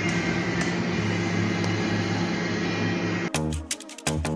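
Small cooling fans, standing in for motors on PLC-controlled circuits, running with a steady hum, with a couple of faint clicks. About three seconds in, this cuts to upbeat electronic music with a steady beat.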